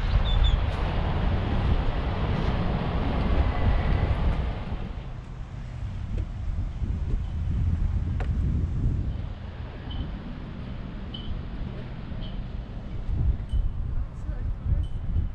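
Wind buffeting the microphone: a heavy, rumbling rush for about the first five seconds, then easing to lighter, uneven gusts.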